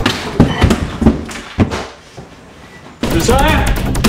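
Three thumps in the first two seconds, then a loud busy soundtrack with rapid repeated cracks and wavering tones starting about three seconds in.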